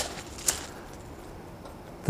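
Faint steady outdoor background with two short sharp clicks, one at the start and one about half a second in.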